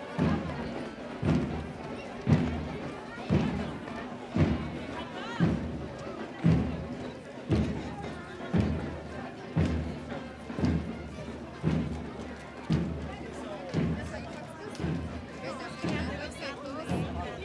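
Marching bass drum beating steady march time, about one stroke a second, over the chatter of voices along the parade route.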